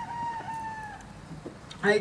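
A rooster crowing once: a single held call of about a second that sags slightly in pitch at the end.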